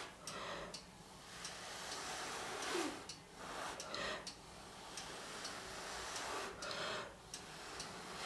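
Breath blown in uneven puffs close over wet acrylic paint on a canvas, each a short rush of air lasting up to about a second, with faint clicks or ticks in between.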